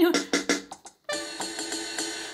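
Yamaha PortaSound PSS-190 mini keyboard: a short run of electronic drum hits from its percussion sounds, then a held electronic note starting about a second in.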